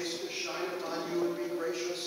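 A man's voice intoning the benediction on a steady reciting tone, words held on one pitch.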